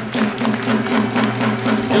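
Rhythmic percussion music with a quick, steady beat of sharp strikes.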